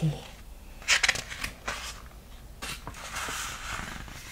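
Pages of a picture book being handled and turned: a sharp paper flick about a second in, a few light ticks, then a longer rustle of pages sliding against each other near the end.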